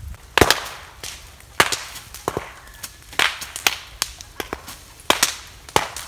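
A series of sharp cracks or knocks, about eight in six seconds at uneven spacing, the first and loudest about half a second in.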